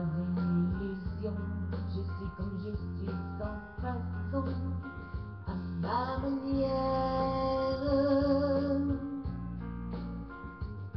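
Backing track with plucked guitar, with a woman singing along into a handheld microphone; about six seconds in a long held note with a slight waver comes in and lasts some three seconds. The sound is thin and muffled, with no highs.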